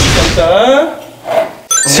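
Edited-in variety-show sound effects over speech-like or musical sound: a sudden hit at the start, a short pitched voice-like sound, then a quick run of high tones just before the end.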